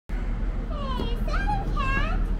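A young child's high-pitched voice making three short wordless calls with gliding pitch, over a steady low hum and background murmur.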